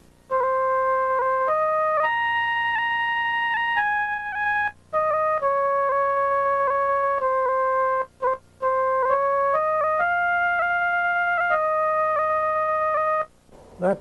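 Sampled flute voice on an Amiga 2000, played from a keyboard: a slow melody of single held notes, one at a time, stepping up and down, with short breaks about five and eight seconds in.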